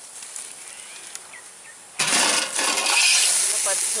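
A few small clicks. Then, about halfway through, a sudden loud hiss from a pot of lentils boiling over a wood fire once its aluminium lid is off.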